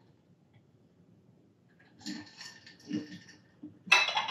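A drinking glass set down on a wooden floor, with one sharp knock near the end, after a second or so of soft handling noises.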